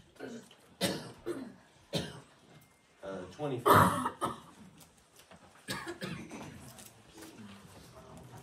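A few scattered coughs and brief, low voices in a quiet room, separate short sounds about a second apart, the loudest a little under halfway through.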